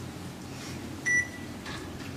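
A single short, high electronic beep about a second in, over a low steady room hum.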